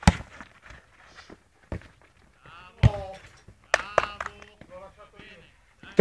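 Sharp thuds of a football being kicked on an artificial-turf pitch: a loud one at the start, a lighter one a little under two seconds in, and another loud one about three seconds in, with players' shouts in between.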